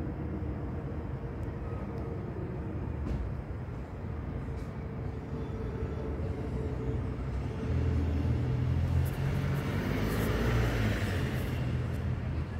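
Low, steady rumble of road traffic that grows louder about eight seconds in, as a vehicle passes close by.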